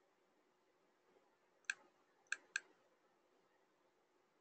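Three faint clicks of a computer mouse button, the last two close together as a quick double-click that opens a folder in a file picker.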